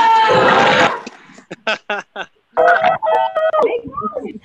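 Classrooms of children and teachers shouting and cheering goodbye over a video call, many voices overlapping. A loud burst of shouting in the first second gives way to a run of short sharp sounds, then more calling and laughter near the end.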